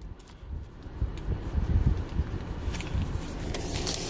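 Low, irregular rumbling handling noise from a phone being moved about, with light rustling near the end as bagged comics are handled.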